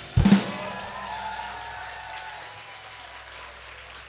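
A rock band's final hit ending a song: a single loud drum kit hit with bass drum and cymbal crash about a quarter second in, then the cymbal and the last chord ringing and slowly fading.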